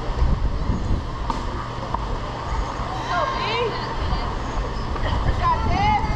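Distant shouting voices, rising and falling calls heard about three seconds in and again near the end, over a steady low rumble of wind on the microphone.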